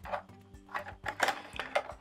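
Background music with steady held notes, with several light clicks from a circuit board and plastic Lego bricks being handled and set into place.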